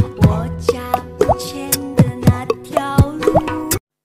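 Human beatboxing into a microphone, layered on a loop station: punchy vocal kick drums about twice a second, sharp clicks, and held vocal bass and pitched tones sounding together. It cuts off suddenly near the end.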